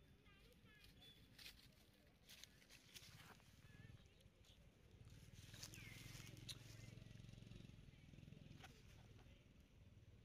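Near silence: faint outdoor background with a few soft clicks and one short, faint falling chirp about six seconds in.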